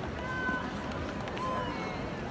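Steady babble of many people talking at once in a busy outdoor square, with no single voice standing out.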